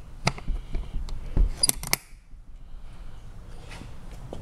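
Sharp metallic clicks and clacks from the recessed latch hardware of an aluminium-edged ATA flight case being handled: one click early, then a quick cluster a little under two seconds in with a brief metallic ring, over low handling rumble.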